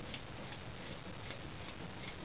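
A few faint, irregular ticks from a bow press's turnbuckle handle being turned to release pressure on a compound bow's limbs.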